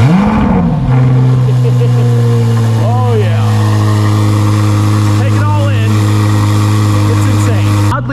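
Chevrolet Corvette C8 Z06's 5.5-litre flat-plane-crank V8 cold-starting, heard from behind its quad exhaust tips. The revs flare up and drop back in the first second, then settle into a loud, steady high idle.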